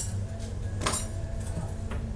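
Café room ambience with a steady low hum, and a brief glass-like clink about a second in, with a fainter one near the end.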